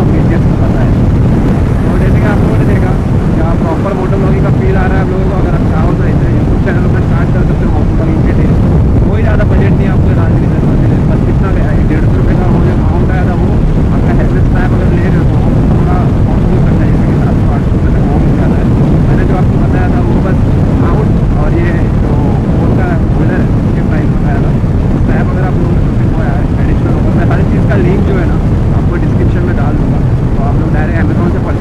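Motorcycle engine running at a steady cruising speed with continuous wind rush, picked up by an earphone microphone inside the rider's helmet.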